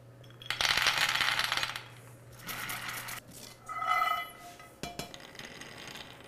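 Hazelnuts rattling in a dry stainless steel pan as it is shaken to toast them: a loud burst of rattling, then a shorter, softer one. A brief ringing tone comes about four seconds in, followed by a single click.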